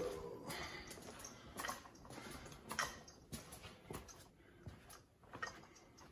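Quiet footsteps on a tile floor, a few soft taps about a second apart as a person walks toward a carpeted room.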